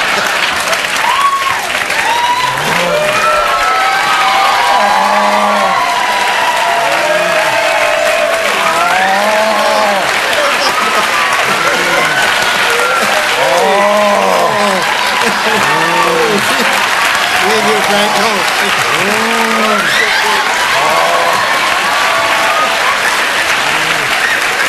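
Studio audience applauding and laughing throughout. Over it comes a long run of a man's cries without words, each one rising and then falling in pitch.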